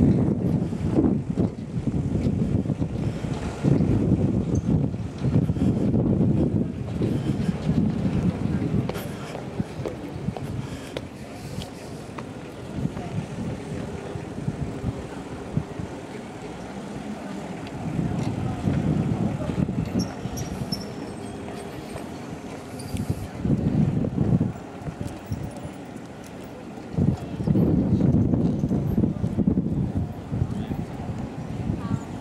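Wind buffeting the microphone in irregular gusts of low rumble, over street ambience with passers-by talking.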